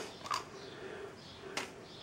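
Faint handling sounds in a quiet room as linseed oil is got out: a soft tap about a quarter second in and a short hiss about a second and a half in.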